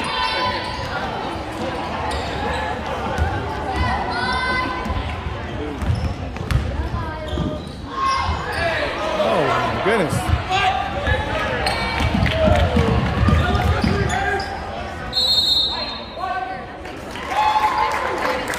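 Basketball game sounds in a gym: a ball dribbled on the hardwood court and sneakers squeaking, with spectators talking in the stands.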